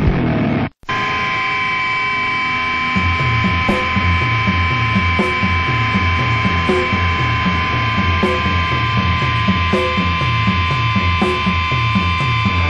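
A brief gap between hardcore punk tracks, then steady guitar-amp hum with held feedback tones opening the next song. About three seconds in, a slow repeating low riff joins, with a light hit about every second and a half.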